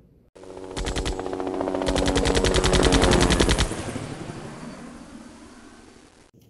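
Machine-gun fire sound effect: a short rapid burst about a second in, then a longer, louder burst of quick evenly spaced shots that stops about three and a half seconds in, over a steady low drone that then fades away.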